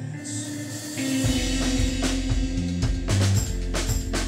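Indie rock band playing live: electric guitar and keyboard holding sustained notes, then about a second in the drum kit and low notes come in, with kick, snare and cymbal hits in a steady beat.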